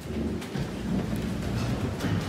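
A low rumble with a hiss above it, starting suddenly and running on steadily.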